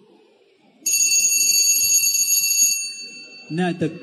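Boxing ring's round bell struck once about a second in, ringing high and metallic for about two seconds before fading away, as the break between rounds runs toward round two. A man's voice starts near the end.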